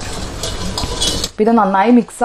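Wooden spatula stirring beetroot liquid in a stainless steel bowl, scraping against the metal as the liquid swishes, stopping about a second and a half in.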